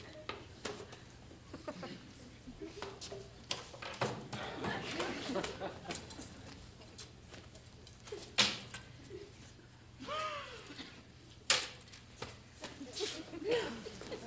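Wooden chairs being handled and moved on a stage floor: scattered knocks and clatter, with a loud knock about eight and a half seconds in and another near eleven and a half, and a short squeak just after ten seconds.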